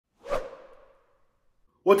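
A whoosh sound effect for a channel logo intro: one quick swish with a ringing tail that dies away within about a second.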